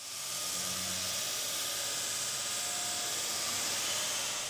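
A steady, even hiss, strongest in the high range, swelling up over the first half second and then holding level.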